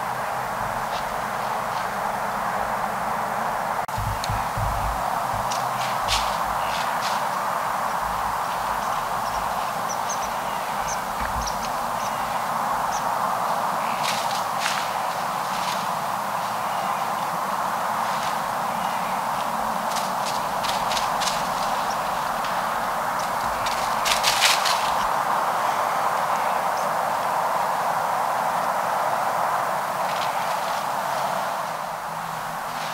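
Footsteps crunching in dry leaf litter in a few short runs, the loudest near the end, over a steady hiss.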